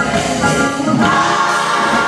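Large gospel choir singing together, many voices holding sustained chords.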